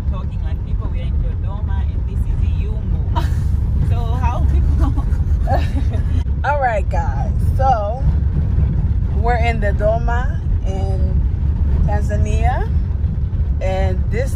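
Steady low rumble of a car driving on a dirt road, heard from inside the cabin. Indistinct voices talk over it from about four seconds in.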